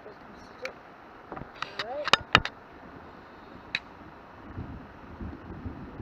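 Sharp plastic clicks from handling a small Fortnite Micro Llama toy dart blaster, the loudest a pair close together about two seconds in and another near four seconds, followed by a low rumble near the end.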